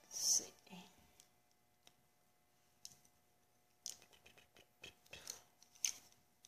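Paint being mixed on a palette: a brush tapping and scraping on the palette, heard as scattered small clicks that come thickest around four to five seconds in. A short breathy hiss about a third of a second in is the loudest sound.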